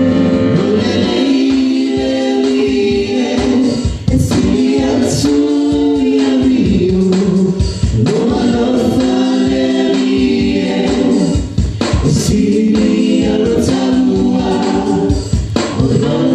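A small vocal group of men and women singing a Samoan hymn together in harmony into microphones, holding sustained notes in phrases a few seconds long.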